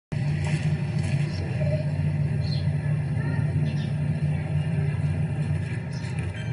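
Steady low rumble that starts abruptly and holds at an even level, with faint voices behind it.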